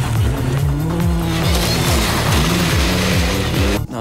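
Volkswagen Golf Kit Car rally car driven hard on a loose gravel stage: its engine revs rise and fall sharply several times with gear changes and lifts, over loud gravel and tyre noise.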